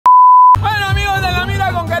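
A loud, steady test-tone beep lasting about half a second, then music starts: a vocal line over a deep bass beat.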